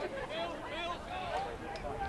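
Distant voices calling out across a lacrosse field: players and the sideline bench shouting short calls over a low outdoor murmur.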